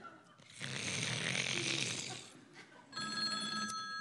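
A loud, rasping snore lasting about two seconds, then a telephone ringing with a steady electronic tone during the last second.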